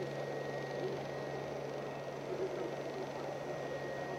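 Neato Botvac D7 Connected robot vacuum running across a hard floor: a steady motor hum with a thin, constant high whine above it.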